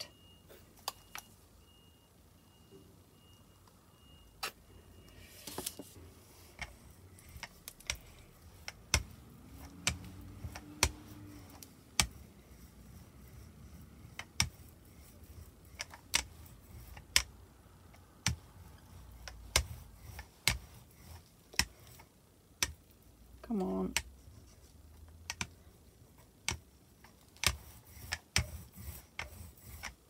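Rubber brayer rolling white acrylic paint across a gelli plate: a string of irregular sharp clicks and taps as the roller is run back and forth over the plate and lifted.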